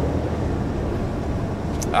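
Renault car transporter lorry's diesel engine and road noise heard from inside the cab while driving, a steady rumble, with a light click near the end.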